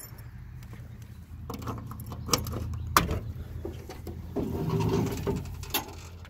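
Keys jangling and handling noise as the trunk of a 1966 Ford Fairlane is unlocked, with a few sharp clicks, the strongest about halfway through, then a short creak a little before the end as the lid swings up.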